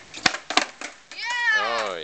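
Skateboard kickflip on pavement: a sharp tail snap, then the deck and wheels knocking down, about four hard knocks within the first second. Then a child's long excited yell of "yeah".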